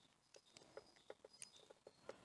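Near silence with a scatter of faint small clicks and taps: fingers working the plastic bulb holders of a car rear light cluster while LED bulbs are swapped between sockets.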